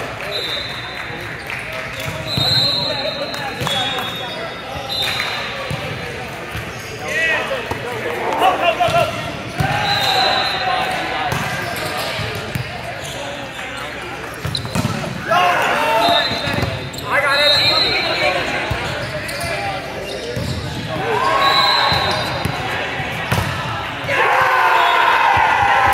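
Indoor volleyball game in a gym hall: players calling out and spectators talking, thuds of the ball being hit and bouncing, and short high sneaker squeaks on the court floor, all echoing in the hall.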